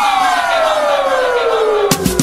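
DJ transition effect in a tribal house mix: a steady descending synth sweep, several tones falling together over a hissing noise wash, with the drums cut out. The percussion beat comes back in right at the end.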